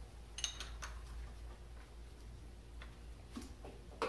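Light metallic clicks and clinks of a box-end wrench being fitted onto the lock nut of a valve rocker arm's adjusting screw. The clicks come as a quick cluster about half a second in, then a few single ones later, as a too-tight exhaust valve is about to be readjusted.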